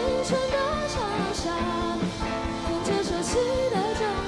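Live pop-rock band: a girl sings a Mandarin song over guitars, bass and drums, with regular drum hits under the melody.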